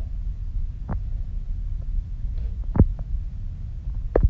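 A steady low hum runs throughout, with a few short, soft knocks from a marker and a small paper card being handled. The loudest knock comes near three seconds in.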